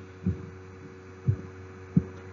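A steady low electrical hum, with three short, soft low thumps during the pause.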